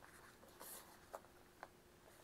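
Near silence with the faint rustle of thin Bible pages being leafed through, and a couple of soft ticks from the paper.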